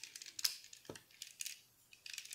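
Hard plastic parts of a Transformers Titans Return Voyager-class Megatron toy clicking and clacking as they are pressed into their tabs and handled: an irregular run of sharp little clicks.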